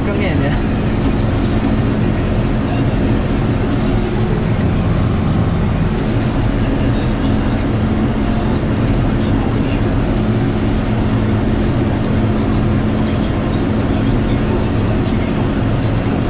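John Deere tractor engine running under steady load, a constant drone heard from inside the cab as the tractor drives across the field.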